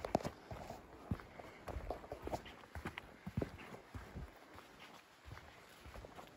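Footsteps of someone walking on a wet, stony forest dirt trail: soft, irregular steps at walking pace.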